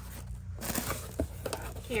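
Cardboard shipping box being opened by hand: flaps pulled back with a rustling scrape and a few light knocks of cardboard.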